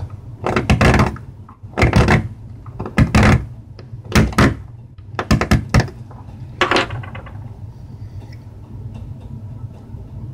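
A sharp knife blade carving into a piece of bone: a series of short cutting strokes, roughly one a second, that stop about seven seconds in.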